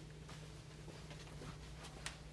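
Faint footsteps of people walking on a carpeted floor, a few soft irregular taps, over a steady low hum of room tone.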